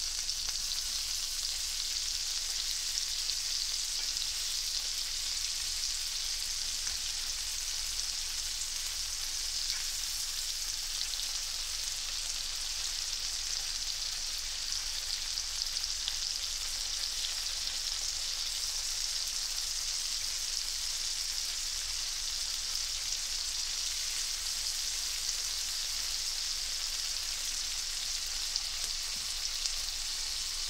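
Shrimp fried rice frying in butter in a pan: a steady sizzle with a few faint pops.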